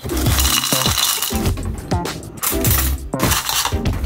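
Dry flake cereal poured into a ceramic bowl, rattling and clinking for about a second and a half and again briefly near the end, over background music.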